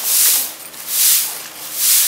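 A grass broom sweeping a packed-earth floor: three even strokes, a little under a second apart.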